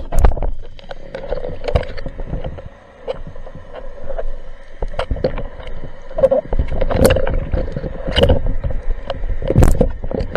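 Underwater sound picked up by a diver's camera while swimming with a speargun: water rushing and rumbling over the housing, with irregular clicks and knocks from the gear being handled.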